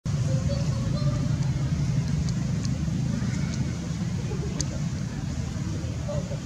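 Steady low outdoor rumble, like distant traffic, running under a few faint sharp ticks and a brief faint higher call in the first second.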